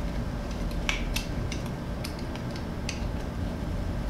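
Scattered light clicks and taps of plastic and metal parts as a seatbelt retractor's spring pack is lined up and fitted back onto the retractor frame, over a steady low background hum.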